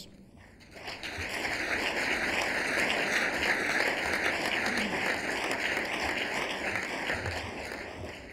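Audience applauding, starting about a second in, holding steady, and dying down near the end.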